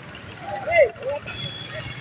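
Outdoor street ambience: voices and traffic noise from an open square. A single loud, short call, rising then falling in pitch, stands out a little under a second in.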